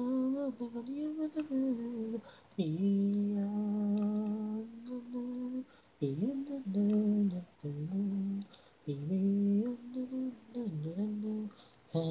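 Unaccompanied solo singing voice, an isolated a cappella vocal track with no instruments. It holds long notes and slides between them, in phrases broken by short pauses for breath about two and a half, six and nine seconds in.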